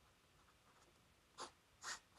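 Fountain pen nib writing on paper: faint scratching, then two louder short pen strokes about half a second apart near the end as lines of a box are drawn.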